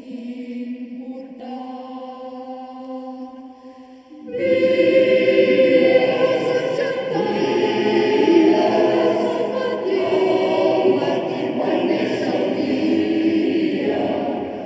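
Mixed choir singing in a large stone church: a soft held chord for the first few seconds, then the full choir comes in loudly about four seconds in and sings on.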